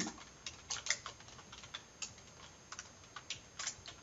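Computer keyboard being typed on, irregular keystroke clicks in short runs.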